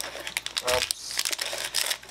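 Foil trading-card booster pack wrapper crinkling in the hands as the cards are pulled out of it: a dense run of irregular crackles.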